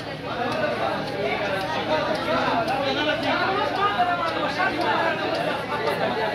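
Crowd chatter: many people talking at once in a packed room, with no single voice standing out.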